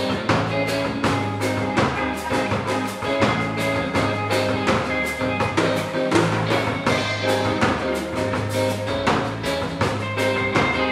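Live band playing: electric guitars, bass guitar and drum kit, with a steady drum beat.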